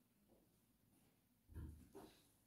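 Near silence: room tone, with a brief low sound about three-quarters of the way through.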